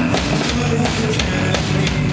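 Live rock band playing loudly, with drum kit and guitar.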